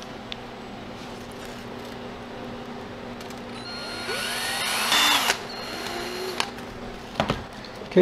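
A drill boring into a frozen block of white bean chicken chili to make a hole for a thermometer probe. It builds up from about three and a half seconds in, is loudest around five seconds, and stops abruptly, with a couple of short knocks afterwards.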